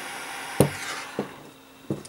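Flip-top jet torch lighter flame hissing steadily while melting the cut end of nylon paracord. The hiss cuts off about half a second in with a sharp click, as of the lid snapping shut. Two lighter knocks follow as the lighter is set down on the table.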